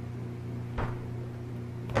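Two short clicks about a second apart as a knife blade makes relief cuts in the thin plastic covering around a binocular eyepiece lens, over a steady low hum.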